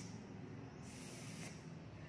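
A woman imitating a bee's buzz with her voice, a hissed 'sss': one hiss ending right at the start and a second, about half a second long, about a second in.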